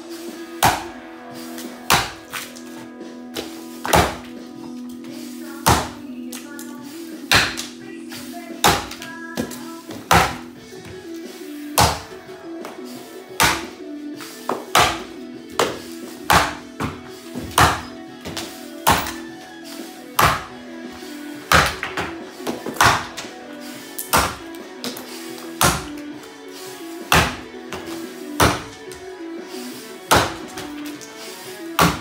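Axe chopping into an 11-inch sycamore standing block, a sharp chop about every second and a half in a steady rhythm. Background music plays underneath.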